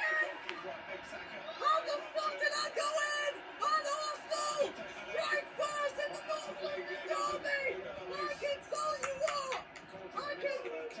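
Indistinct voices without clear words, in short broken phrases at a moderate level.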